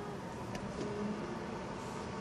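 Steady street traffic noise heard from inside a car stopped in traffic, with a faint click about half a second in.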